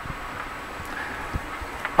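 Steady fan hiss in a small boat cabin, with a couple of faint knocks about one and a half seconds in.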